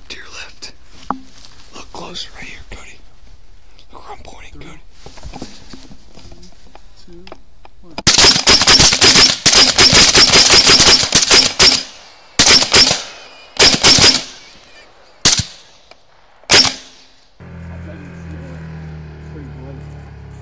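Rapid rifle fire: a fast, unbroken string of shots for nearly four seconds, then two short bursts and two single shots, each ending in a brief echo. Before it come hushed whispers. Near the end a truck's steady low idling hum takes over.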